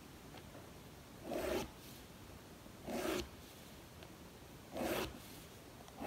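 Pen drawn along a plastic ruler on notebook paper, ruling lines: three short scratches of about half a second each, spaced roughly one and a half to two seconds apart.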